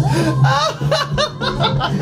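A man laughing hard in high-pitched, cackling peals that break and rise again several times.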